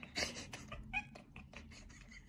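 A cat making short, quiet calls: a breathy cry just after the start and a brief pitched meow about a second in, over a run of faint quick clicks.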